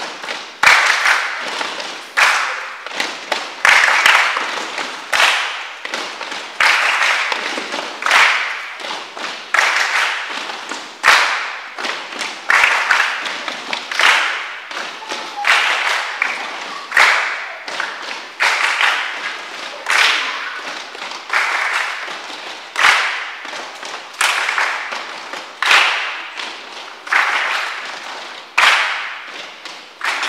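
A group of children clapping together in a large echoing hall, about one clap every second or so, each clap ringing out before the next.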